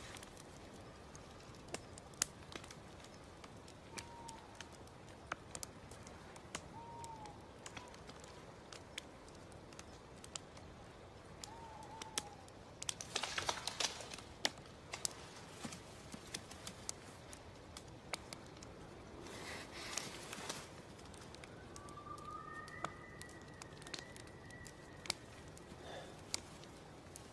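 Wood campfire crackling quietly with scattered sharp pops, with two brief bouts of rustling and handling at the fire, about halfway through and again a little later.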